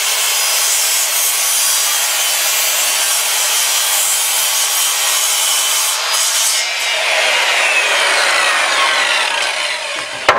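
Circular saw cutting through a 3/4-inch scrap board: a loud, steady blade-in-wood noise. From about seven seconds in, the pitch falls away steadily.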